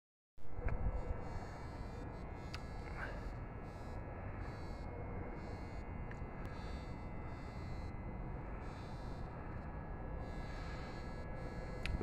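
Faint, steady outdoor background rumble and hiss with a few soft clicks, and no distinct engine or voice standing out.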